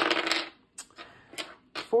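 Two dice thrown onto a desk: a clatter as they land and tumble for about half a second, then a few lighter clicks as they settle.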